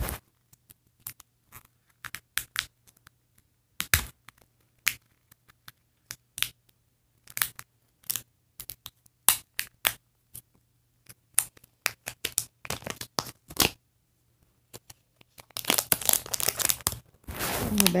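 Small plastic foil toy packet being crinkled and torn open: irregular sharp crackles, thickening into a dense run of tearing and crinkling near the end, over a faint steady hum.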